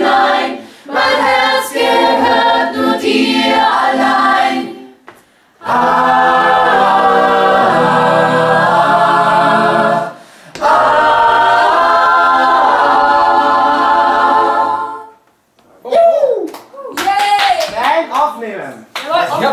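Mixed choir of men's and women's voices singing a cappella: several phrases of held chords with short breaks between them. Near the end a single voice slides up and down in pitch.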